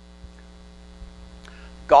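Steady electrical mains hum, a low buzz with several even overtones, heard through a pause in a man's speech. The man's voice comes back in right at the end.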